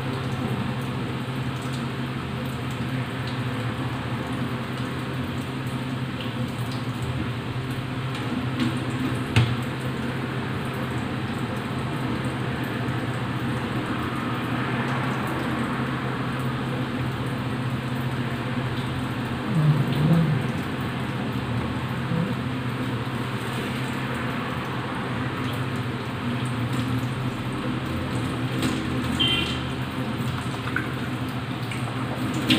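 Raw squid being cleaned by hand over a stainless-steel colander: soft wet handling against a steady background hum, with a sharp click about nine seconds in and a brief low sound around twenty seconds.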